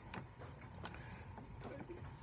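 Quiet room tone in a pause between spoken remarks, with a few faint clicks and a brief faint voiced sound near the end.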